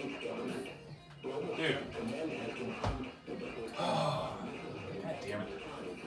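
A voice from a television broadcast with music underneath.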